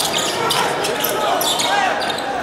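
A basketball bouncing on a hardwood gym floor during play, with sneakers squeaking and players calling out.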